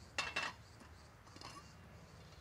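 Metal saucepan clinking as it is handled: two short knocks with a brief faint ring about a quarter second in, then faint light handling sounds.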